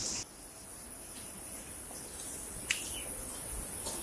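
Steady, high-pitched chorus of insects in tropical forest, with one short tick about two-thirds of the way through.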